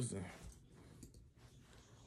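Faint clicks of a small Canon camera being handled, a few light plastic clicks as a part is fitted back on it.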